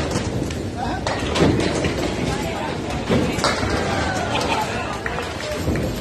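Candlepin bowling alley: a small ball rolling down a wooden lane, then a sharp clatter of pins about a second and a half in, with more knocks from nearby lanes, over people talking in the hall.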